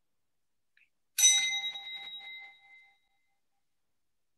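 A small bell struck once, ringing with a clear tone that fades away over about two seconds, marking the start of a time of silent reflection.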